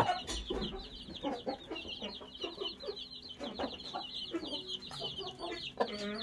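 Chicks about two weeks old peeping continuously in many quick, high cheeps, with a few low clucks from the mother hen.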